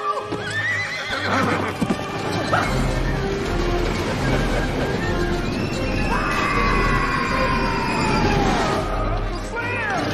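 A cartoon horse whinnying with a wavering, bending pitch about the first second, over orchestral chase music that runs throughout. Later comes one long, slowly falling tone.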